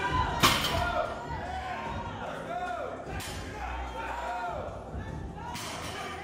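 Indistinct voices and music echoing in a large gym hall, with three sharp knocks roughly two and a half seconds apart.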